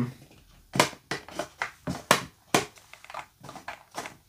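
Irregular sharp plastic clicks and knocks, about ten of them, as a LEGO train locomotive and its track controller and cable are handled. No motor is heard running: the train fails to start, which the owners put down to old, worn cables.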